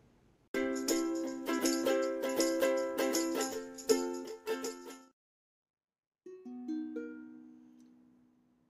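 A short plucked-string music jingle with a steady strummed rhythm, cutting off about five seconds in. After a short pause, a ukulele tuned down a half step sounds three single notes one after another, each left ringing and fading away.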